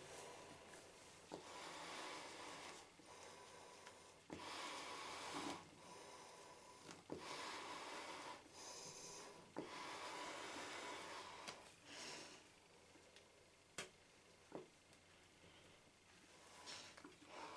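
Faint, slow breathing through a US M40 gas mask with its C2 filter canister, a hissy breath every couple of seconds. A few light clicks and rubs come from the mask's head-harness straps as they are tightened to stop a leak.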